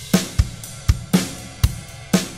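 A drum loop of kick, snare and ride cymbal plays back through a compressor set to a slow release. Regular kick and snare hits sound over a ride that holds a steady level in the gaps, with no pumping or breathing.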